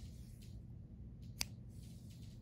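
A single snip of scissors cutting the cotton yarn about a second and a half in, over quiet room tone.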